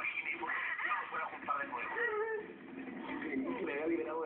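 A voice crying and wailing without clear words, its pitch wavering up and down.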